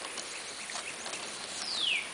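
Outdoor ambience with a faint steady hiss, and near the end a bird's high whistled call sliding steeply down in pitch.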